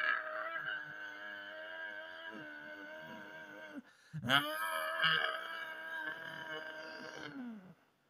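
A person's voice holding two long, drawn-out moaning wails. The first breaks off just before four seconds in. The second starts with an upward swoop, holds, and falls away shortly before the end.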